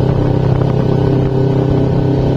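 Kawasaki Ninja 250 carbureted parallel-twin engine running at a steady speed while the bike cruises, an even hum that holds without revving up or down.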